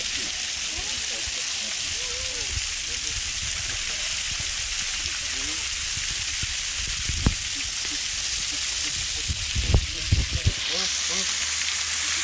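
Steady hiss of water spraying from an overhead shower onto an elephant and splashing on the ground. Faint voices underneath, and a few low thumps about seven seconds in and again near ten seconds.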